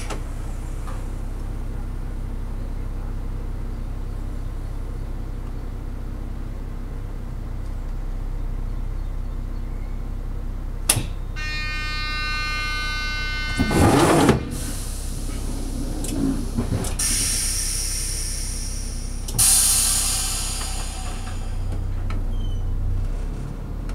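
Class 842 diesel railcar idling steadily, heard from inside the cab while the train stands still. About halfway through, a warning tone sounds for about two seconds and is followed by a loud clunk. Then compressed air hisses twice, the second hiss fading out.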